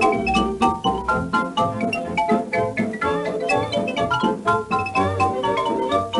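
Instrumental passage of a 1931 British dance-band recording: the full band plays a quick, busy run of short notes, with no singing.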